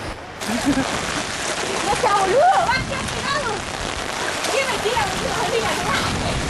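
Steady heavy rain with splashing water, starting abruptly just after the start, with voices calling in the background.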